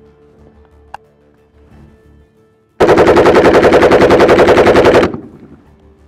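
An AK-47 rifle fires one continuous full-automatic burst of about two seconds, roughly ten shots a second, starting a little before the middle. There is a single sharp click about a second in.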